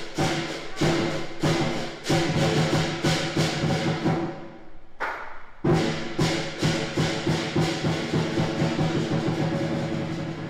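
Lion dance percussion: a big drum beaten together with clashing cymbals, several strikes a second. The beat drops away briefly about four seconds in and comes back with a loud strike a second and a half later.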